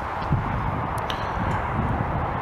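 Steady rushing background noise, with a couple of faint clicks about a second in.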